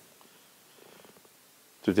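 Near silence: quiet room tone with a faint soft sound about a second in, then a man's voice begins right at the end.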